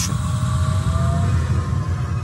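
Deep, steady rumbling drone from a documentary soundtrack, with a faint thin tone rising slightly through the first half.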